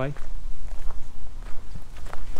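Footsteps of a person walking, a few faint steps over a steady low rumble.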